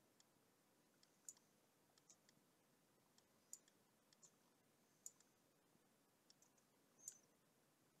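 Faint, irregular clicking of a computer mouse over near-silent room tone, with a few sharper clicks every second or two among softer ones.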